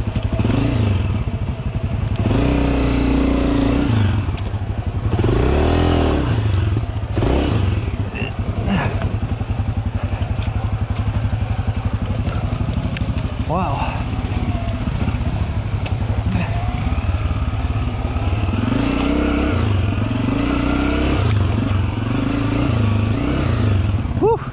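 Dirt bike engine running at low revs down a steep, rough descent, its pitch rising and falling several times as the throttle is blipped.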